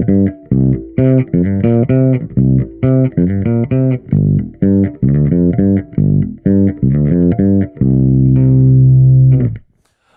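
Gibson ES-Les Paul bass on its bridge pickup, played through a Trace Elliot Elf 200-watt bass head and 1x10 cabinet with the gain at about three o'clock, giving almost full dirt: a gritty, distorted bass tone. A quick run of notes ends on one long held note that is cut off suddenly shortly before the end.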